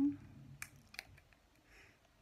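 A few faint, sharp clicks as a new iPhone XR is handled and turned over in the hands, fingers and nails against its case and protective film.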